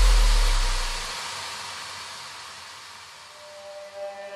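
Breakdown in an electronic dance track: a held deep bass note cuts out about a second in, leaving a wash of white noise that slowly fades away. A synth melody starts to come in near the end.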